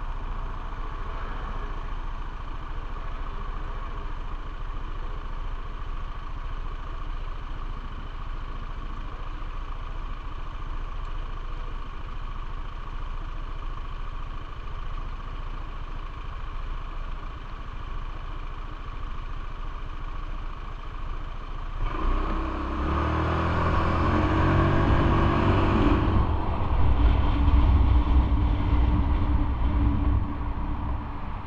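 Motorbike engine idling steadily while stopped, then revving up and pulling away about three-quarters of the way through, growing louder, with a change in the engine note a few seconds later.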